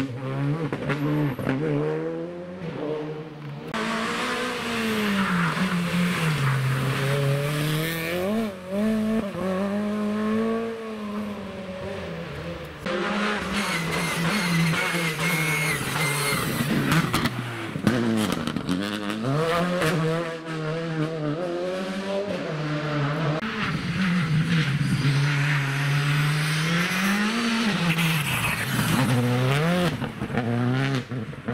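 Škoda Fabia Rally2 cars with turbocharged four-cylinder engines passing one after another through a hairpin. Each engine drops in pitch as the car brakes in, then rises as it accelerates out through the gears, with crackles off the throttle. A brief tyre squeal comes about halfway through.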